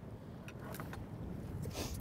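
Low, steady rumble of wind and water around a small boat, with a few faint knocks and a brief hiss near the end.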